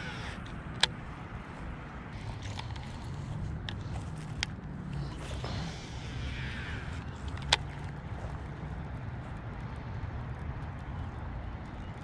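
Steady wind rumble on the microphone. Over it come a few sharp clicks from handling a baitcasting rod and reel, and a soft whir in the middle as line pays off the spool during a cast.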